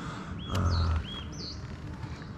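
A bird calling: four short whistled notes in about a second, two lower hooked ones and two higher swooping ones. A brief low rumble sounds under the first notes.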